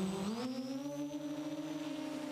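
Brushless motors and propellers of a small multirotor drone whining at high throttle during a flat-out run; the pitch rises over the first half second, then holds steady.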